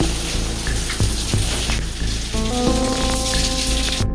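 Steady rain-like patter and hiss of water dripping and trickling down the rock walls of a sinkhole cave into an underground lake. From about halfway through, sustained musical notes sound over it.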